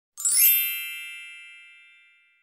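A bright, sparkling chime sound effect: a ring of several high tones that comes in with a quick shimmer and then fades slowly over about two seconds.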